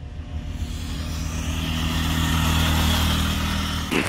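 KTM RC390's single-cylinder engine as the motorcycle approaches and passes the roadside at steady revs, growing louder to a peak about three seconds in, then easing off a little.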